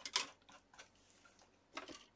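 A few faint, short clicks and taps from hands handling things on a cutting mat: a cluster just after the start, a single tick about a second in, and another brief cluster near the end.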